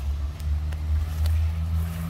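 A motor vehicle engine running with a low, steady rumble whose pitch shifts slightly.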